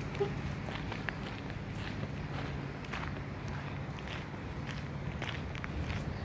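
Footsteps of sneakers on an asphalt path at a steady walking pace, faint ticks over a steady low rumble.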